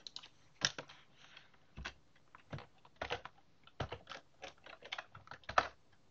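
Typing on a computer keyboard: irregular keystroke clicks, a few a second with short pauses between runs.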